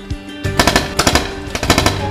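Three rapid bursts of paintball marker fire, starting about half a second in, over steady background music.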